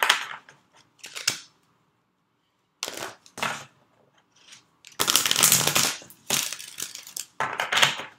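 A deck of oracle cards being shuffled by hand, in bursts of papery rustling and flicking: a short one about a second in, another around three seconds, and a longer, louder run in the second half.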